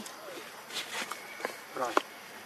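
Faint clicks and rustling, then a person says a short word near the end.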